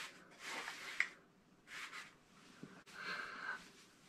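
Faint rustling and soft clicks from handling a cardboard box and the plastic slabs of CGC-graded comics inside it, with a sharp click about a second in.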